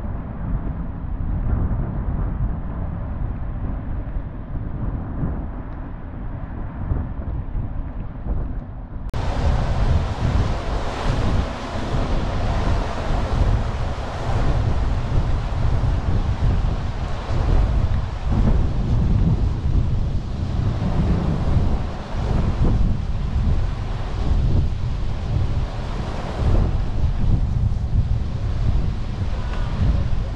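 Wind buffeting the microphone of a camera mounted on a moving storm-chase vehicle: a loud, rough rumble with gusts rising and falling. About nine seconds in, the sound turns suddenly brighter and hissier.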